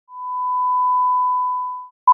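A single steady electronic beep, a pure mid-pitched tone lasting nearly two seconds, that swells in and fades out.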